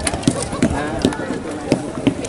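Indistinct background voices of people talking, with a few short sharp clicks scattered through it.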